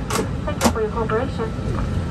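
Steady low hum inside a parked Airbus A320's cabin, with a voice speaking briefly in the first second.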